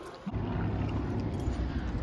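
Wind buffeting the microphone outdoors: a steady low rumble that starts abruptly about a third of a second in.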